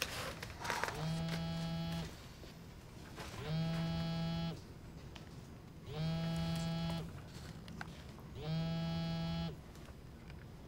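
A mobile phone buzzing for an incoming call: four low, steady buzzes of about a second each, roughly two and a half seconds apart.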